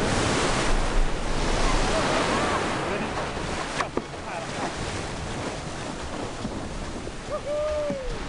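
Ocean surf breaking and washing up the beach, loudest in the first few seconds as a wave crashes in, then easing into a steady wash of whitewater.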